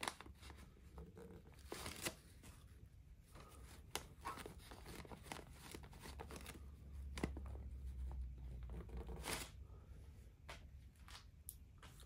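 A cloth rubbing along the painted sheet-metal side of a model locomotive tender, wiping off a spoiled red lining stripe. Faint, scattered rubbing strokes with a few sharper clicks.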